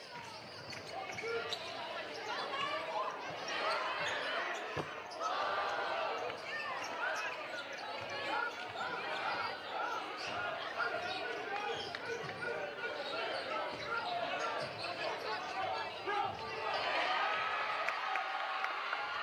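Basketball being dribbled on a hardwood gym floor, with a crowd chattering and shouting all through, and one low thump about five seconds in.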